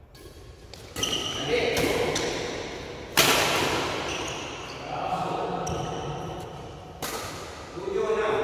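Badminton rackets striking a shuttlecock in a doubles rally: several sharp cracks that echo in a large hall, the loudest about three seconds in. Players' voices call out between the hits.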